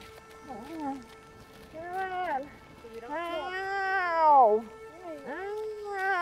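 A woman's wordless, wailing cries, several rising-and-falling moans in a row, the longest and loudest one in the middle, over sustained background music.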